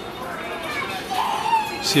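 Children's voices and chatter around a moving carousel, with one high child's voice calling out in the second half.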